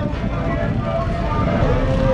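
Background voices talking over a steady low rumble.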